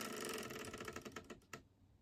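Plastic numbered board-game spinner clicking as it spins down, the clicks slowing and fading until it stops about a second and a half in.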